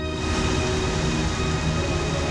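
A steady rushing, rumbling noise that comes in just after the start, over held background music.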